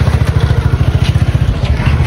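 An engine idling close by, a loud, even, rapid low throb.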